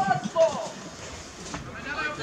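People shouting at a football match: two loud, short calls in the first half second, then quieter voices in the background.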